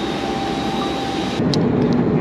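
Steady jet aircraft noise on an airport apron: an even rushing roar with a thin high whine. About one and a half seconds in it cuts abruptly to the duller hum of an airliner cabin, with a short click.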